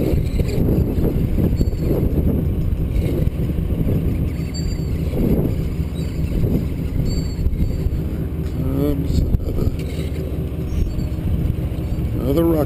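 Sport-fishing boat's engine running steadily, a low continuous hum with water and wind noise over it. A person's voice calls out briefly about nine seconds in.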